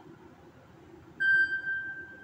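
A single clear, high tone, like a ding, that starts suddenly about a second in and fades away over about a second and a half.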